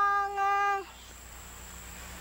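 A high voice singing one long, steady held note that slides down in pitch and breaks off a little under a second in.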